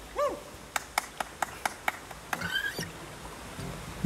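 Outdoor sounds by a small stream: a short rising-and-falling animal call, then a run of six sharp clicks about four a second and a brief chirp, over a faint steady hiss.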